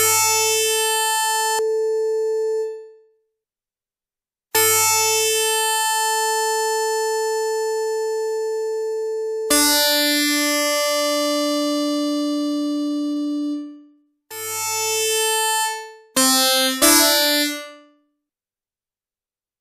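Yamaha Reface DX four-operator FM synthesizer playing an electric-guitar patch under construction: about six two-note chords, each starting bright and metallic and mellowing toward a plain sine-like tone as the upper overtones die away before the fundamental. The first three chords are held for several seconds with silent gaps between them; the last few come short and quick near the end.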